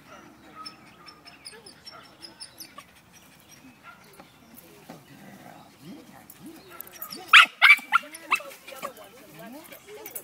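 Jack Russell terrier whining, worked up over a rat hidden in a bucket, with a few loud, sharp yelps about seven to eight seconds in.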